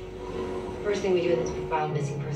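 Movie trailer soundtrack playing from a home-theater system into the room: a voice speaking over a low, sustained music bed.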